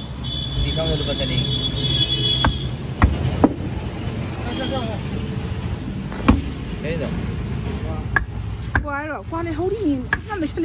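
Heavy knife chopping fish on a wooden block: about six single sharp chops at irregular intervals, the loudest past the middle, over a low steady background rumble.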